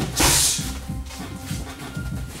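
Background music, with one short, loud burst about a quarter second in as a round kick strikes the Thai pads.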